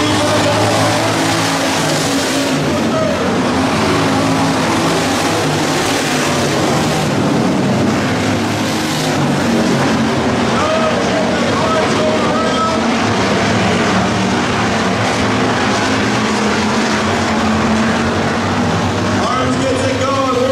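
Several hobby stock race cars running hard around a dirt oval, their engines continuous with pitch rising and falling as they go through the turns.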